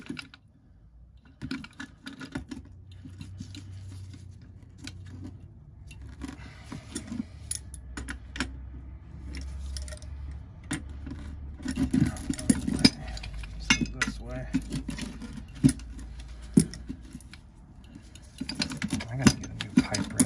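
Steel wrenches clinking, knocking and scraping on a furnace gas valve and its pipe fitting as the valve is worked loose, a run of irregular metallic clicks that grows busier about halfway through.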